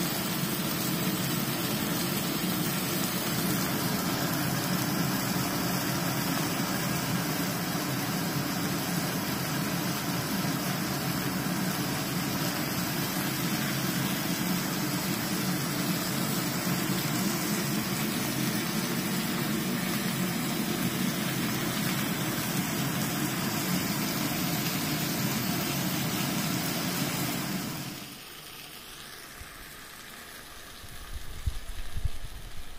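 Extractor fan built into a Miele induction cooktop running steadily, with the hiss of meat frying in the pan. The sound drops away suddenly near the end.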